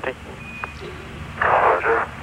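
The Mission Control air-to-ground radio channel between transmissions: one short high beep about half a second in, then about half a second of radio static hiss near the end, over a low steady hum.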